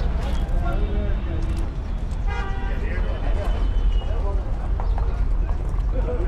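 Market street ambience: a steady low rumble with background voices, and a short vehicle horn toot a little over two seconds in.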